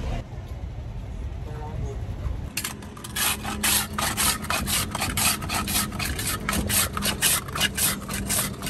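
Metal hand ice scraper shaving a block of ice in quick, even strokes, about three a second, making shaved ice. The scraping starts about two and a half seconds in.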